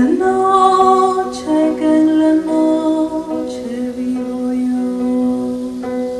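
Live acoustic music: a nylon-string classical guitar accompanies a woman's voice holding long notes, with a rain stick being turned over.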